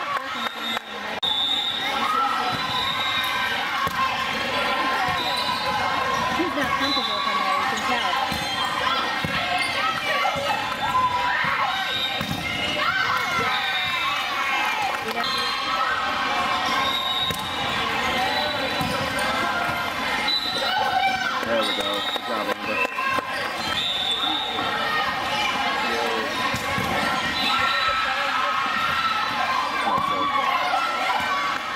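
Volleyballs being hit and bouncing on a hard court floor, amid overlapping voices of players and spectators in a large sports hall.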